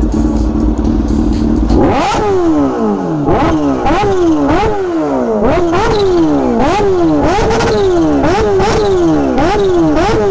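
Kawasaki Ninja H2's supercharged 998 cc inline-four idling, then from about two seconds in revved in a string of quick throttle blips, about a dozen, each rising fast and falling back toward idle, roughly one every two thirds of a second.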